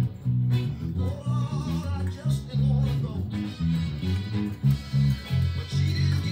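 A homemade electric bass played through a small Fender practice amp, on brand-new DR Hi-Beam strings that still have their new-string zing and with the tone knob turned all the way down. It plays a soul bass line of short, separated notes in a steady rhythm, along with the original soul record and its band.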